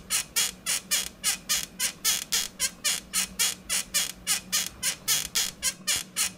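A fast, regular chirping sound effect, about four to five high, sharp chirps a second, kept up without a break.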